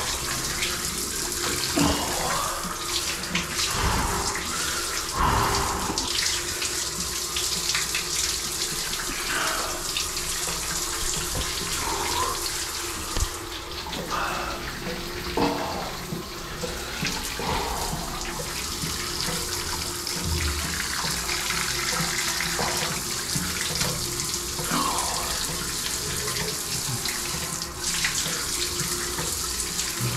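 Shower running steadily, water spraying and splashing.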